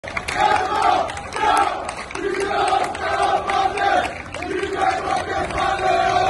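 A marching crowd chanting a slogan together, many voices in unison, in repeated loud phrases with brief breaks between them.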